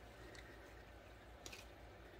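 Near silence: room tone, with two faint clicks of handling.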